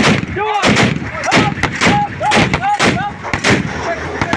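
Gunshots fired in a steady run, about two a second, with short shouted calls between the shots.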